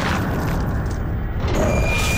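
Trailer sound-design booms: a heavy hit right at the start and another about one and a half seconds in, over a loud, dense wash of noise, with music underneath.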